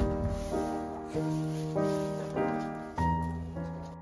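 Background piano music: chords struck roughly every half second to a second, each one ringing and fading.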